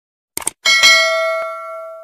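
Sound effects of a subscribe-button animation: a quick double click about half a second in, then a bright notification-bell ding with several ringing tones that fades away over about a second and a half.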